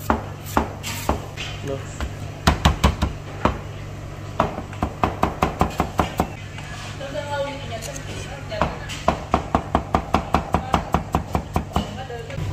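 Carrot being chopped with a Chinese cleaver on a plastic cutting board. The strokes start as scattered single chops, then come in two quick even runs of about five chops a second as the carrot is cut into strips and minced. A steady low hum sits beneath the chopping.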